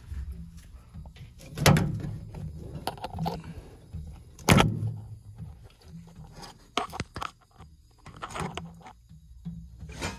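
Knocks, scrapes and clicks of a handheld phone and hand bumping against the sheet-metal burner compartment of a gas water heater, with two loud thumps about a second and a half and four and a half seconds in and smaller clicks later.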